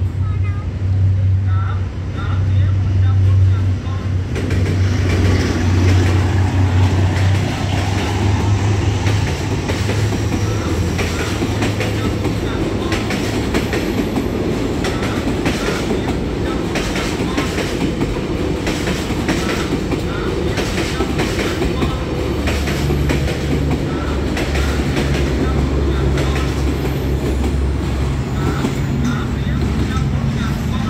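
A D19E diesel-electric locomotive hauling a passenger train through a level crossing: a low engine drone as the locomotive comes through, then from about four seconds in the steady rumble of the passing coaches with their wheels clacking over the rail joints.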